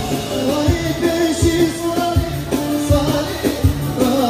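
Dance music with a singer's voice carrying the melody over a steady drum beat, played loud in a large hall.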